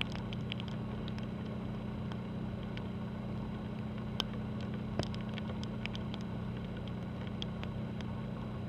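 Steady low drone of ship engines carrying across the harbor water as a cruise ship and its tug move in slowly. Scattered faint sharp ticks sit over the hum, two a little louder about four and five seconds in.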